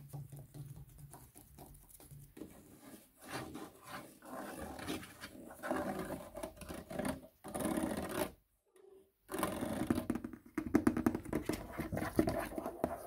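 Fast fingertip tapping and scratching on the plastic buttons and panel of an exercise machine's control console, in a lo-fi recording. About eight and a half seconds in it stops dead for under a second, then comes back faster and louder.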